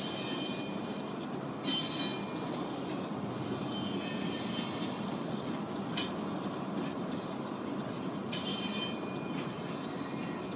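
Covered hopper cars of a freight train rolling past: a steady rumble of steel wheels on rail, with occasional sharp clicks and a few brief high-pitched squeals near the start, around four seconds in and near the end.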